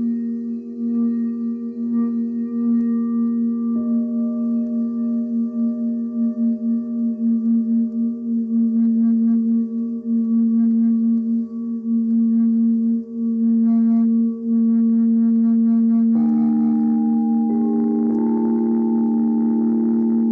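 Several singing bowls sounding together in long, sustained tones, the lowest one pulsing steadily. Higher tones join about four seconds in, and more come in near the end, thickening the chord.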